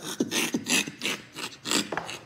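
A man laughing breathily, short wheezy gasps of laughter about four a second.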